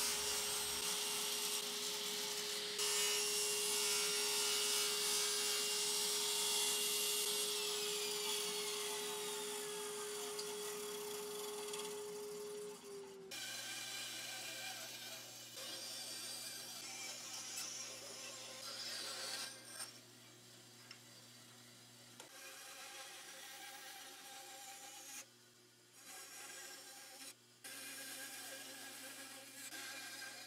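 A table saw cuts through a hardwood block, with a steady blade hum under loud cutting noise, for about the first thirteen seconds. It then gives way suddenly to a quieter band saw running and cutting small notches into a hardwood key blank.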